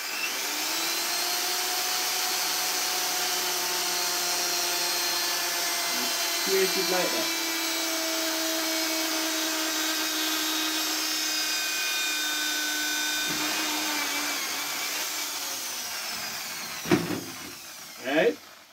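Corded electric drill running steadily with a whine while its bit bores a hole through the wall of an inch-and-a-half PVC pipe. The motor winds down about three seconds before the end, and a knock follows near the end.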